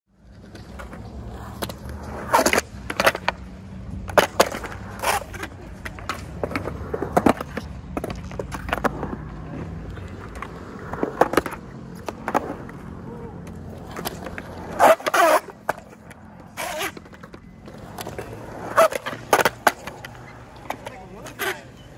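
Skateboards on concrete: urethane wheels rolling with a steady low rumble, broken by a dozen or so sharp clacks of boards striking the ground. The loudest pair comes about three quarters of the way in, and the rumble then dies down.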